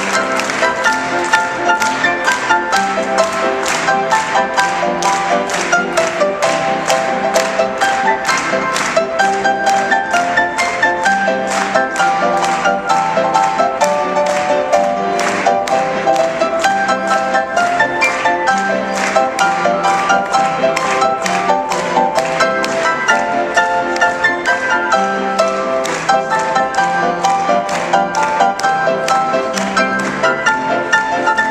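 Grand piano played four-hands as a duet: a lively two-step with a steady beat and an alternating bass line under the melody.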